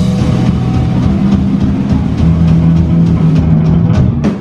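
Live rock band playing loud: electric guitar and bass holding sustained low notes over a pounding drum kit.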